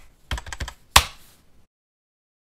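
Keyboard-typing click sound effect for on-screen text being typed out: a quick run of sharp clicks, the loudest about a second in, stopping at about one and a half seconds.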